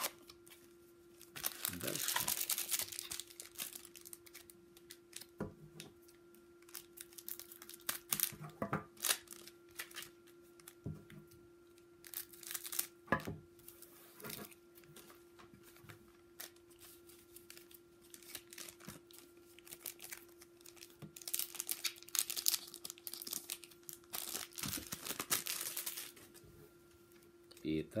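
Trading-card pack wrappers being crinkled and torn open by hand, with light taps and clicks of cards being handled on a table; the crinkling is heaviest about two seconds in and again for several seconds near the end. A faint steady hum runs underneath.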